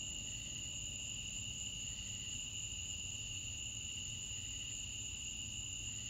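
A steady chorus of crickets at night: a continuous high-pitched trilling that does not change, over a faint low rumble.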